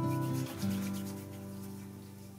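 Hands rubbing together in quick strokes, palms sliding over each other as they spread a clear gel; the rubbing fades after about a second. An acoustic guitar plays underneath.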